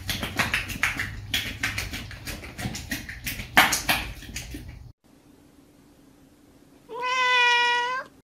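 A horse flicking its tongue in and out of its mouth makes a run of quick, irregular wet slaps and clicks. After a break, a cat gives one long meow near the end.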